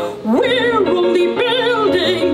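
Operatic singing with a wide vibrato. The voice slides up into a long held note just after the start, then begins a new phrase near the end, over a low sustained accompaniment.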